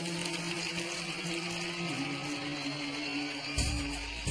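Music from a sketch-comedy TV soundtrack: sustained held chords that shift once about halfway through. A different, bass-heavy piece cuts in shortly before the end.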